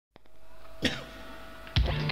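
A single cough about a second in, over a faint steady tone. Near the end, music with a drum kit starts on a loud hit.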